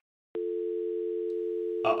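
Telephone dial tone on a corded landline handset. After a brief silence it starts about a third of a second in as a steady, unbroken two-note tone. The line has gone dead and the call is over.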